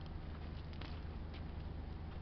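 Quiet background: a steady low hum with a few faint, soft ticks, and no distinct event.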